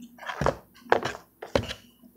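Rigid plastic card toploaders being handled, shuffled and set down: three quick knocks and scrapes about half a second apart.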